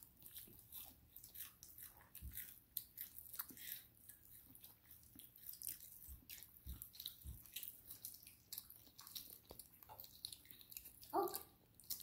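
Children chewing barbecue chicken drumsticks: faint, irregular clicks of biting and chewing.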